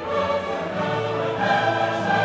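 Classical choral music: a choir singing with orchestral accompaniment, in sustained chords that shift every half-second or so.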